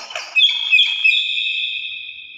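Hill myna giving a loud, long, high whistled call on two held pitches, starting about half a second in, after a short harsh note.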